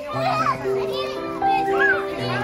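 Young children chattering and calling out over background music of long, held notes.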